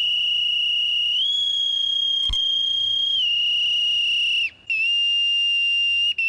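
Boatswain's call (naval pipe) sounding a long, high, steady whistled note that steps up in pitch about a second in and drops back after about three seconds. It breaks off briefly near four and a half seconds, then sounds again: naval piping honours for an arriving dignitary.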